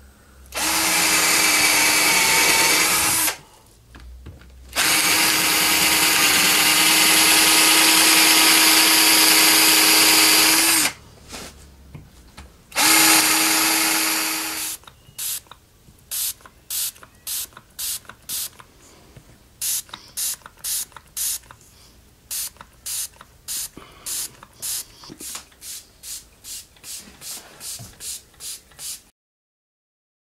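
Cordless drill running in three long runs as it bores into a rotted wooden rafter, with short pauses between the runs. About fifteen seconds in, the drilling gives way to a long series of short, evenly spaced bursts, about one and a half a second.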